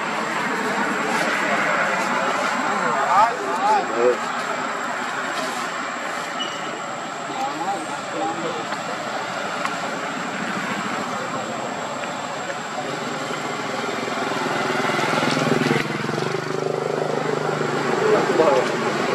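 Outdoor background of indistinct people's voices over steady traffic noise, with a low engine-like hum growing near the end.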